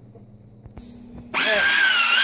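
Made By Me toy pottery wheel's small electric motor starting up under the foot pedal: a loud, steady high whine begins about two-thirds of the way in, its pitch wavering slightly.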